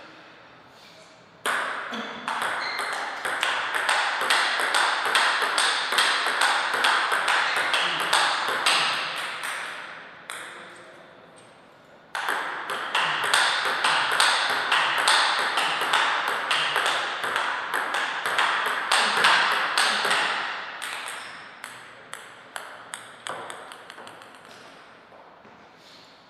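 Table tennis ball being hit back and forth in a warm-up rally: quick ping-pong clicks of the ball off rackets and table. The clicks come in two long runs, each starting suddenly and fading out, then a few scattered bounces near the end.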